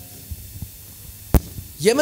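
A pause in speech filled by a steady low electrical hum from the microphone and sound system, with a few soft low thumps and one sharp knock about a second and a half in. A man's voice starts again near the end.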